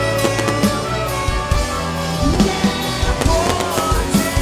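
A live band and symphony orchestra play an instrumental passage, with a trumpet lead over held notes and drum hits.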